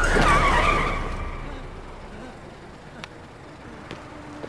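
Car tyres screeching as a car brakes hard and skids to a stop, loudest at the start and fading away over about a second and a half.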